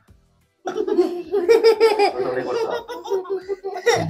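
Several people laughing together, children's voices among them, starting after a brief hush about half a second in.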